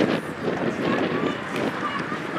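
Distant shouts and calls from soccer players and spectators carrying across an open playing field, over a steady background hiss.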